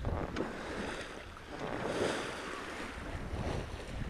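Water rushing along a sailing yacht's hull as it moves under sail, with wind rumbling on the microphone. The water noise grows louder for a moment about two seconds in.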